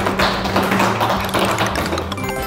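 A rapid, even rattle of taps that runs without slowing, over background music with steady low notes.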